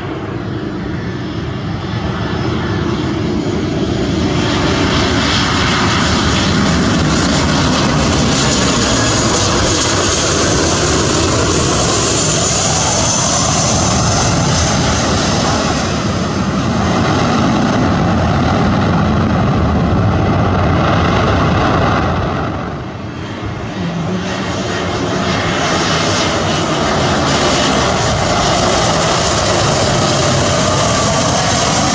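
Turbofan engines of an Oman Air Boeing 737 landing: a loud, steady jet roar with a whine that shifts in pitch as it passes close and rolls down the runway. After a brief dip a little over 20 seconds in, the roar of another airliner's engines builds again as an IndiGo Airbus A320neo comes in on approach.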